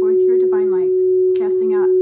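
A steady pure tone held without a break or fade, of the kind played as a meditation backing, with a voice speaking softly over it.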